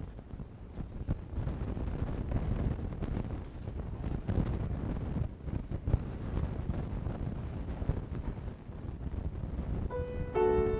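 Low rustling and rumbling handling noise with a few scattered knocks, from people and papers moving near the microphone. A piano note starts right at the end.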